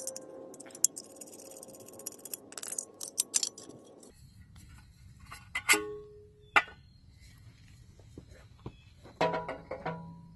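A screwdriver working the screws of a small engine's muffler heat shield, then two sharp metal clinks, a little before and after six seconds in, as the sheet-steel shield comes off. A cluster of clinks follows near the end.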